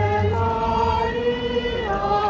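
A group of people singing a hymn together in slow, long-held notes, the melody stepping to a new note about half a second in and again near the end. A low hum underneath fades out early on.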